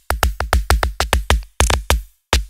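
Electronic drum loop run through the SLAP transient plugin: fast, irregular drum-machine hits, about seven a second. Each hit has a sharp click on the attack and a decaying low sub tail. The click layer's waveform is being swapped during playback, changing the texture of the transients, and a denser, louder hit comes near the end.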